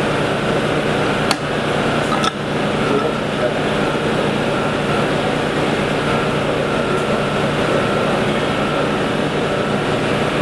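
Steady mechanical hum of room machinery under indistinct background voices, with two sharp clicks about a second apart, a second or two in.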